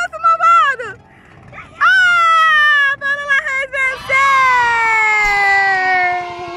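A very high-pitched, squeaky voice-like sound in short bending bursts, then one long whine that slowly falls in pitch over about three seconds.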